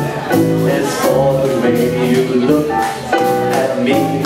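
Live small jazz band playing a swing tune, with upright bass and drum kit, the melody moving in short repeated phrases over a steady beat.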